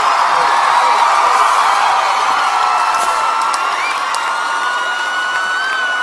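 Concert crowd screaming and cheering, with a few long, high screams held over the din from about halfway in.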